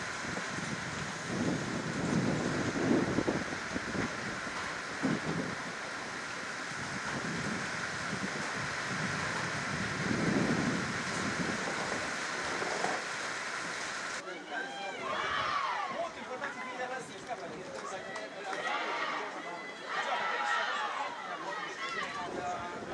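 Outdoor ambience with a steady noisy hiss and a few low gusts of wind on the microphone. About two-thirds of the way in it cuts to scattered voices calling out across the pitch.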